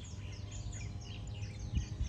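Birds chirping: many short, quick calls that slide downward in pitch, over a low steady rumble.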